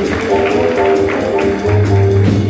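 Live jazz band playing: upright bass notes and a drum kit with regular cymbal strokes, about two a second, under held melody notes.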